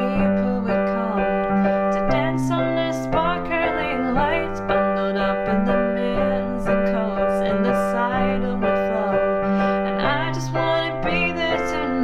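Piano chord accompaniment in G major, a steady chord pulse with the bass note moving every couple of seconds through the G, C and F chords, with a voice singing the melody over it.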